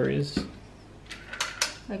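A few light clicks and knocks of a plastic kimchi tub and its lid being handled, in a quick cluster about a second in.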